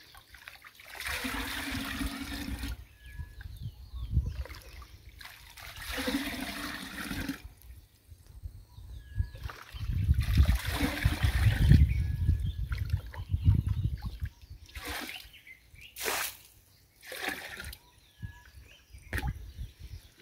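Water scooped from a shallow pool with a dipper and poured into a clay pot. There are three longer pours, the last and longest about halfway through, with short splashes of scooping between them and near the end.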